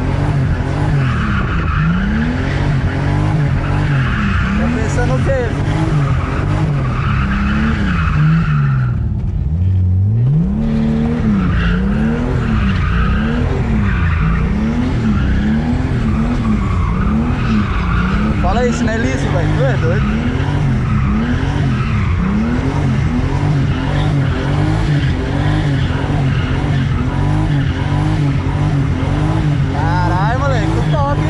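Turbocharged BMW 328's straight-six engine heard from inside the cabin, revving up and down about once a second while the rear tyres squeal in a drift. About nine seconds in, the revs fall low and the tyre noise briefly stops, then the engine climbs again and the squealing resumes.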